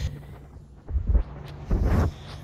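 Two low, muffled buffets on the phone's microphone, about a second in and again near the end, over a faint steady hum.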